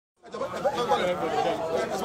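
Several people talking over one another in overlapping chatter, starting a moment in.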